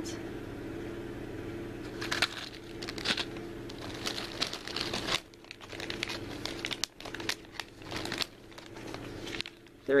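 Plastic packaging crinkling and rustling in several short spells as blister-packed keychains and bagged toy figures are handled, over a steady low hum.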